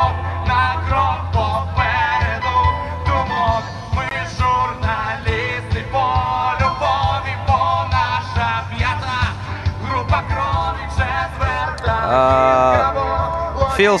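Live rock band playing through large outdoor concert speakers: a singer's melody over a steady bass and drum beat.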